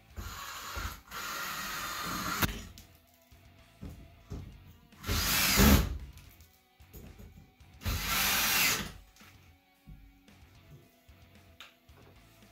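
Cordless drill driving screws to fasten an electrical box into the wall, in four short runs, the loudest about five seconds in.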